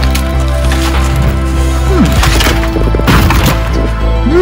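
Wood cracking and splintering in several crunching bursts, the loudest about two and three seconds in, over background music.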